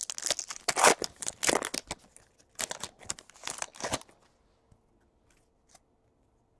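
A trading-card pack wrapper being torn open and crinkled by hand: a quick run of crackly rustles that stops about four seconds in.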